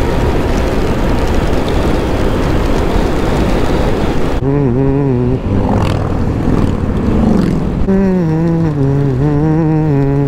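Wind rushing loudly over the microphone of a motorcycle riding at road speed. About four seconds in the rush eases and a low hum with a wavering pitch comes in briefly, then returns and holds through the second half.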